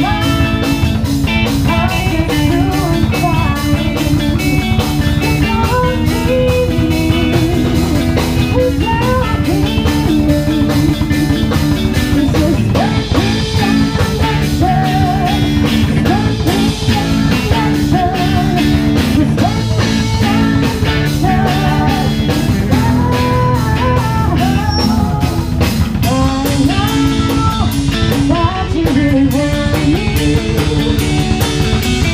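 Live rock band playing: a woman singing into a microphone over electric guitars, bass guitar and a drum kit keeping a steady beat.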